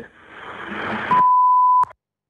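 A single steady, high censor bleep lasting under a second, covering a swear word on a recorded emergency phone-line call. Before it, the phone line's hiss builds up; the bleep ends with a click and the sound cuts off sharply.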